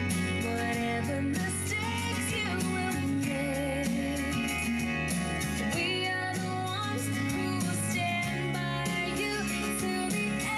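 A song with singing, played from a CD on a Bose Wave Music System IV.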